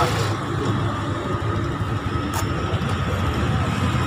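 A motor vehicle passing on the road, a steady rushing noise, with one sharp click a little past halfway.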